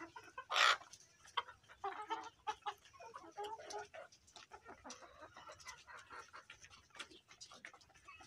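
A flock of Egyptian Fayoumi hens clucking in short, scattered 'kor kor' calls, with one louder, brief call about half a second in. The keeper takes this 'kor kor' call as the sign that the hens are ready to start laying.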